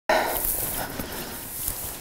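Footsteps crunching through dry grass and brush, a few irregular steps over a rustling haze that fades slightly.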